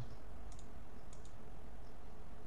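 A few faint computer mouse clicks over a steady low room hum.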